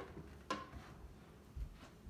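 A serving utensil tossing pasta with meat sauce in a plastic Tupperware Stack Cooker casserole: a few light knocks against the bowl, one about half a second in and another near the end.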